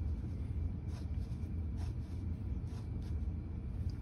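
Steady low hum, with a few faint soft scrapes and taps from the parts of a hand-held demonstration model of a rifling cutter being slid along its frame.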